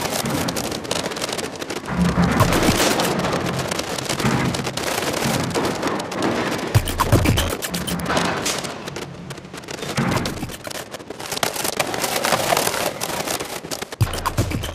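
Acousmatic electroacoustic music: a dense, shifting field of crackling noise across the whole range, with low sustained swells that come and go every few seconds.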